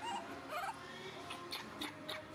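Baby macaque whimpering: two short gliding cries near the start, then a quick run of short high squeaks, about three a second.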